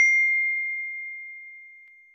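A single bell-like ding sound effect from a subscribe-button animation: one high, pure tone, struck just before and ringing on, fading steadily away over about two seconds.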